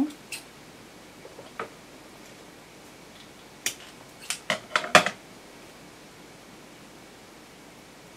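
Scissors snipping the tip off a folded satin petal held in tweezers: a quick run of about five sharp clicks starting a little under four seconds in, over quiet room tone.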